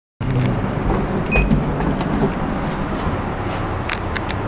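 Steady low rumble inside a stainless-steel passenger lift car, with scattered clicks and knocks and one brief beep about a second and a half in.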